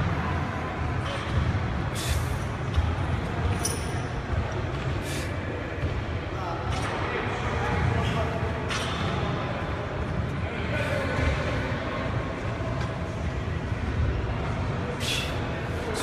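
Busy gym background: a steady low rumble with sharp clicks or clanks about every one and a half to two seconds in the first half, and again near the end.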